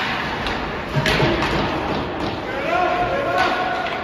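Ice hockey play in an echoing indoor rink: sharp knocks of sticks and puck against the ice and boards, the loudest about a second in, with voices calling out in the second half.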